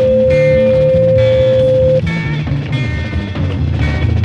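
A steady 500-cycle (500 Hz) test tone over rock backing music; the tone cuts off suddenly about halfway through while the music plays on.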